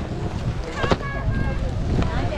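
Wind rumbling on the microphone, with voices of skiers chatting in a lift line and a single sharp clack just under a second in.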